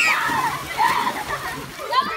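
Pool water splashing as a stack of children slides off a pool slide into the water, with children's voices over it.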